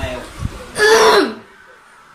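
A person's short, loud throaty vocal sound about a second in, falling in pitch, close to a throat clear.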